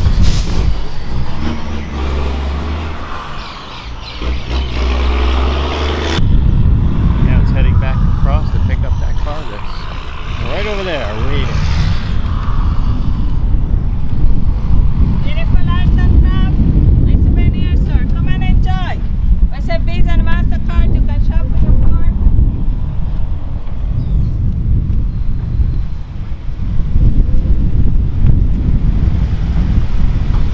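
Wind buffeting the microphone outdoors, a heavy, uneven low rumble, with indistinct voices in the background. The rumble changes character abruptly about six seconds in.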